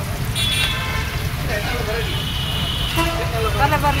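Road traffic rumbling steadily, with a short vehicle horn toot about half a second in and a longer horn sound from about two seconds in, under background voices.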